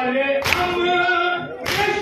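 A group of men chanting a Shia noha in unison without instruments, keeping time with matam: open palms striking chests together, one sharp collective slap about every second and a quarter, twice here.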